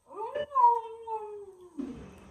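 One long, high-pitched, meow-like call that rises quickly, then sinks slowly in pitch for over a second, followed near the end by a short "mm".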